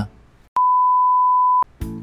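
A single steady electronic beep, one pure tone lasting about a second, starting about half a second in and cutting off sharply, with a click at its start and end.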